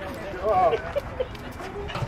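A small dog whimpering briefly, one rising-and-falling whine about half a second in, over people's voices.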